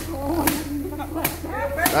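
Sheaves of rice stalks slapped hard against a stone block to thresh the grain by hand: three sharp slaps, at the start, about half a second in and near the end.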